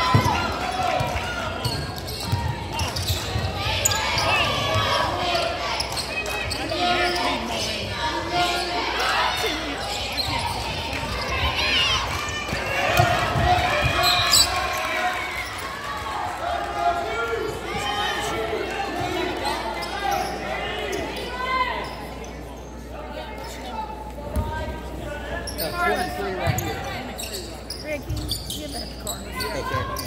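Basketballs bouncing on a hardwood gym floor, repeated low thumps, under the chatter of players' and spectators' voices echoing in the gymnasium.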